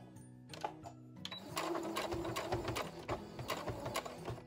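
Domestic sewing machine backstitching through thick layers of fabric, starting about a second and a half in as a fast, even run of needle strokes. Soft background music plays throughout.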